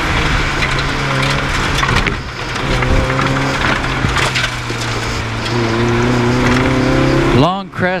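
Rally car's engine heard from inside the cabin, running at steady revs over road and tyre noise. The engine note breaks off shortly before the end.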